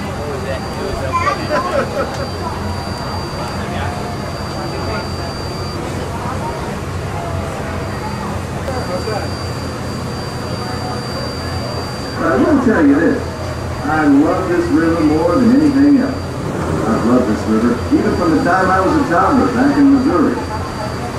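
Steady low machinery hum from the riverboat with faint passenger chatter, then loud voices speaking from about twelve seconds in.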